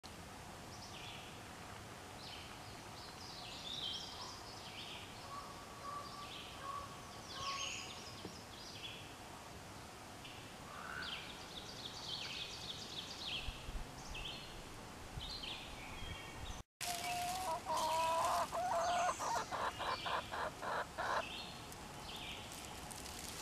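Wild songbirds chirping with short, repeated high notes. After a brief dropout near the end, hens cluck louder and closer, breaking into a fast run of clucks.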